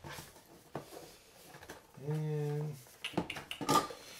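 A cardboard product box being handled and opened, with light scraping and a click, then a few sharp taps near the end. About halfway through, a man hums a short, steady "mmm".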